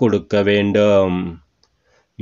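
A man reading aloud in Tamil, his voice stopping about three-quarters of the way through, followed by a pause with a faint click.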